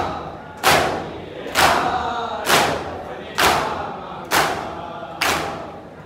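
A crowd of men doing matam, striking their bare chests in unison: six loud slaps, a little under a second apart. Between the strikes the group chants a noha.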